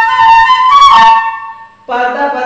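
Eight-hole bamboo Carnatic flute playing a held note that steps up to a higher note and falls back, the phrase fading out about a second and a half in.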